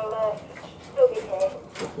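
Mostly short bits of people's voices, with a few faint clicks and knocks as a tayra bites and tugs at a piece of raw chicken held against the wire mesh of its cage.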